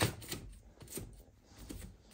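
Plastic LEGO baseplates being pressed and handled by hand: one sharp click at the start, then a few faint taps and light rubbing.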